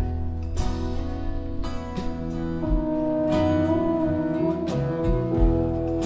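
Live country-folk band coming in together on an instrumental intro: acoustic guitar strumming, with pedal steel guitar and fiddle holding long, sliding notes over a steady bass.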